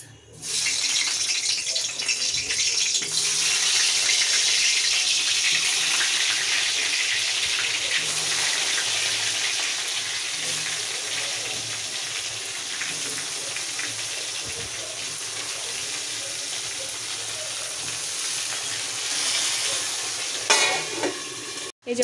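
Slices of pointed gourd (potol) sizzling as they fry in hot oil in a kadai: a steady hiss that starts about half a second in, eases slightly later on, and cuts off abruptly just before the end.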